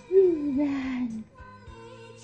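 A voice sings one long note that falls slowly in pitch for about a second. Soft background music with held tones carries on after it.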